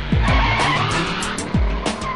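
A Volkswagen Golf pulling away hard, its tyres skidding on a dirt road, over background music with deep, falling drum hits.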